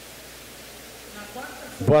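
Steady hiss of background noise on the recording, with a faint voice briefly in the middle. A man starts speaking loudly near the end.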